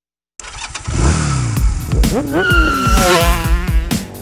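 A moment of silence, then the intro of a children's song starts: upbeat music with a steady beat and a cartoon motorcycle engine-revving sound effect whose pitch glides up and down.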